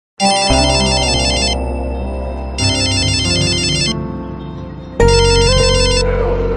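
Mobile phone ringtone: electronic ringing that starts suddenly and sounds in three bursts with short gaps between them, over music.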